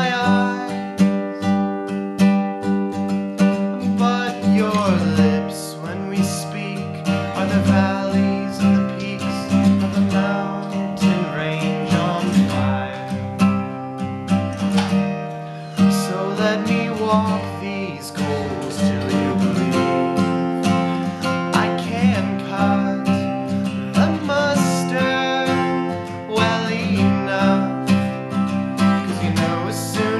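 Acoustic guitar strummed in steady chords while a man sings along.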